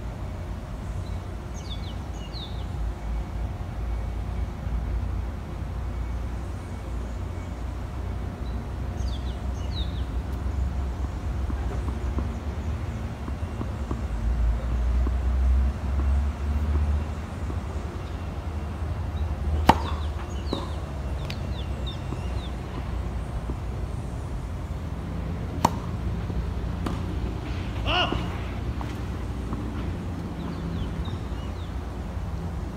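Tennis ball struck by a racket: two sharp hits about six seconds apart in the second half, over a fluctuating low outdoor rumble with faint bird chirps.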